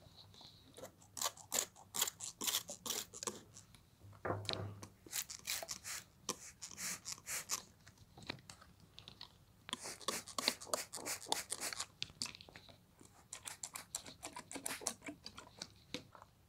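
Packaging crinkling and rustling as it is handled and opened, in clusters of faint crackles, with a soft thump about four seconds in.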